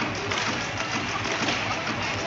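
Music over the arena's PA with a steady murmur of crowd chatter, echoing in a large hockey arena.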